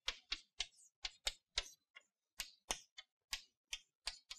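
Chalk tapping on a blackboard as a formula is written: an irregular run of sharp taps, about three a second, with a short pause around the middle.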